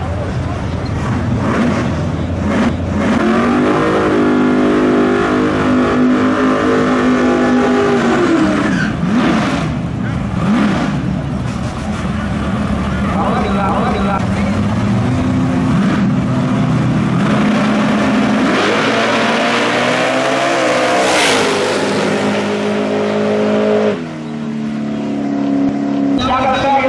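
Fox-body Mustang drag cars' engines revving in the staging lanes, then launching off the line: the engine note climbs hard through the last several seconds, dips briefly at a gear change and climbs again near the end. Crowd noise runs underneath.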